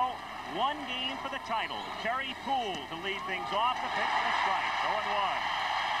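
Old TV baseball broadcast audio: a play-by-play announcer talking over a steady stadium crowd murmur, which swells a little in the second half as the pitch comes in.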